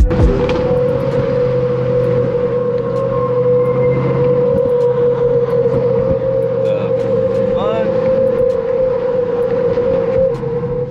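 A steady, high, single-pitched hum from the Golden Gate Bridge's railing singing in the wind, holding the same pitch while the car's speed changes. Under it are the low drone of the Charger 392 Scat Pack's 6.4-litre HEMI V8 at cruise and tyre noise, heard from inside the cabin.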